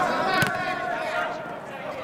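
Players' voices calling out during a football match, with one sharp kick of the ball about half a second in.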